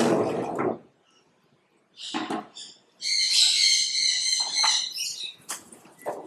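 A short noisy scrape or rustle at the start, then from about three seconds in a high bird call lasting about two seconds.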